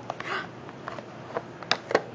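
A few light clicks and knocks as a small plastic box is opened and a jar is lifted out of it, the sharpest click near the end, over quiet room tone.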